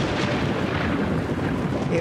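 Loud rushing roar of a violent storm around a small plane, wind and rumbling noise together. The hiss in it thins out toward the end.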